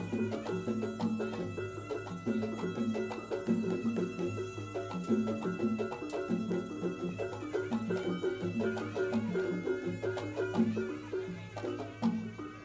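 Live traditional music from a percussion ensemble: drums and struck percussion play a steady, repeating rhythmic pattern with a pitched melodic line.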